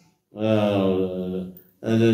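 A man's voice holding one drawn-out syllable on a steady pitch for about a second, a hesitation sound mid-speech. Ordinary talk resumes near the end.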